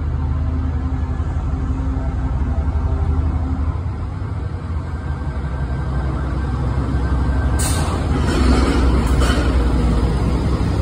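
Class 70 diesel-electric freight locomotive running with a steady low engine drone as it approaches and draws past. It grows louder over the last few seconds, with a few sharp clicks as it comes level.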